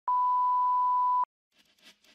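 A steady electronic test tone, one pure pitch held for just over a second and cutting off sharply: the line-up tone placed at the head of a broadcast recording.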